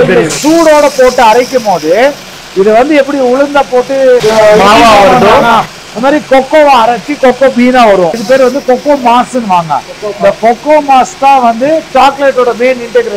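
Continuous speech: a man talking.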